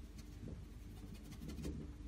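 Faint, irregular scratching of a filbert brush stroking acrylic paint across a stretched canvas, over a low steady hum.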